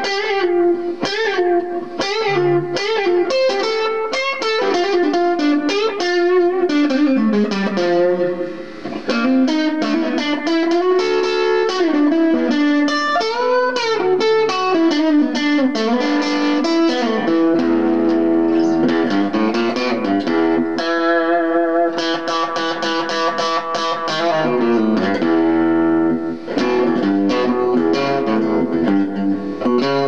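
Fender Stratocaster electric guitar played blues-style through a small Fender Champion tube amp with a delay pedal: single-note lead lines with string bends and held notes, with low bass-string notes a couple of times in the second half.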